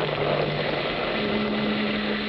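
Radio-drama storm sound effect: a steady rushing of wind and rain. A low held note sits underneath and steps up to a higher note about halfway through.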